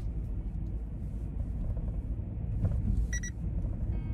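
Car driving, heard from inside the cabin: a steady low road and engine rumble. A short high beep about three seconds in.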